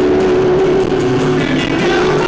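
Live rock band music recorded from the audience: the band playing loud and steady, with an acoustic guitar being strummed.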